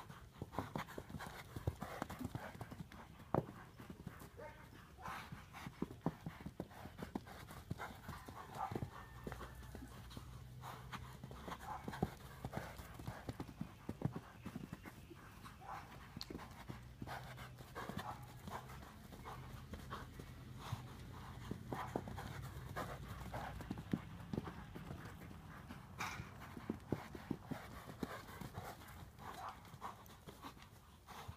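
Hoofbeats of an Appendix Quarter Horse running loose on the dirt of an arena: many irregular thuds that come and go as he passes along the fence.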